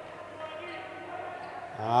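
Faint court sound of an indoor handball match, with the ball bouncing on the hall floor. A man's commentary starts near the end.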